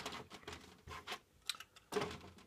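Light, irregular clicks and taps of model goods wagons being handled and pushed along model railway track by hand.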